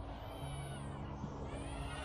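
Emax Tinyhawk Freestyle micro quadcopter's brushless motors and three-blade props whining faintly in flight, the pitch rising and falling with throttle.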